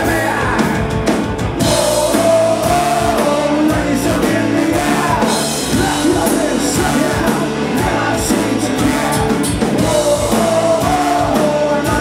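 Live ska band playing loud: electric guitars, bass and drum kit under a horn section of trombone and saxophone, with sung vocals.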